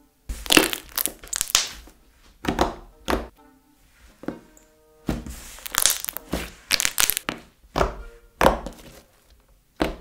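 Thick, glossy slime with a light amount of clay in it being folded and squeezed between fingers, giving bursts of sticky pops and crackles.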